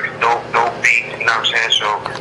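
A person talking over a telephone line.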